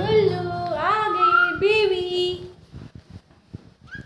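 A high female voice singing a drawn-out, wavering melodic line for about two and a half seconds, then stopping, leaving only faint handling clicks.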